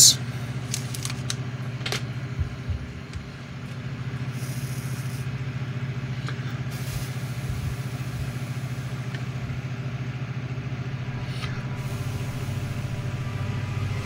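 Electric soldering gun humming steadily while it solders LED wire leads, with a few light clicks from handling in the first couple of seconds.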